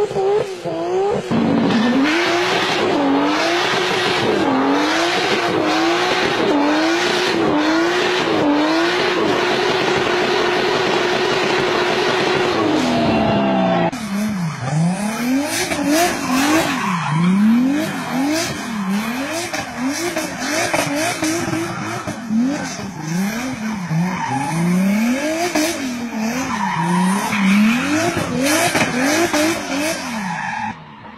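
Racing car engine sound effect, its pitch climbing and dropping back again and again as if shifting up through the gears, then holding one high steady note and winding down. After a sudden cut about 14 s in, a second engine sound swings up and down in deeper revs.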